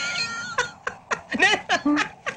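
A man laughing hard: a shrill, high-pitched squeal at first, then a run of short 'ha' bursts about four a second.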